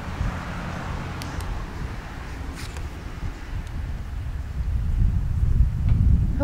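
Wind buffeting the camera microphone outdoors, a low uneven rumble with a few faint clicks in the first few seconds.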